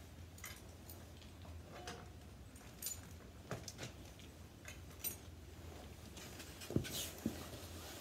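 Faint, scattered clicks and light taps over a low steady hum: leather driving harness and its metal buckles being handled.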